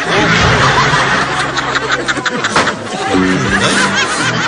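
A burst of laughter from a group of people, as from a sitcom laugh track, thick for about two seconds and then dying away. A short held pitched sound comes near the end.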